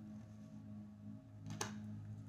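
Quiet room with a steady low hum, and a single short tap about one and a half seconds in as a tarot card is laid down on the cloth-covered table.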